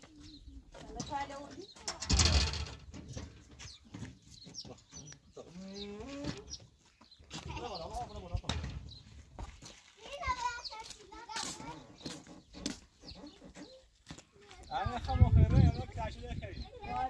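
Mostly speech: people talking in short phrases, with a small child's voice among them.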